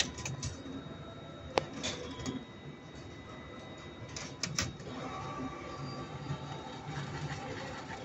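NCR deposit ATM's note-handling mechanism running as it takes in and validates banknotes: a steady mechanical whir with a sharp click about one and a half seconds in, a few more clicks around four and a half seconds, and the whir getting a little louder after that.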